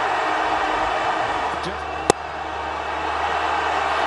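Steady crowd noise in a cricket stadium, with a single sharp crack of bat striking ball about two seconds in.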